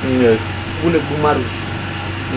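A man talking in short phrases over a steady low mechanical hum.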